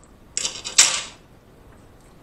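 A metal fork set down in a clear food tray: a short clatter and scrape starting about a third of a second in, loudest just before a second in, then dying away.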